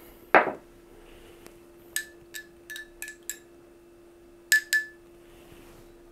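Glass mug of steeped flower tea clinking: five light clinks in quick succession, then two more about a second later, each with the same short glassy ring. A brief loud swish comes just after the start, and a faint steady hum runs underneath.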